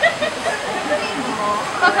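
Steady rushing of running water, like a small waterfall, under faint background voices.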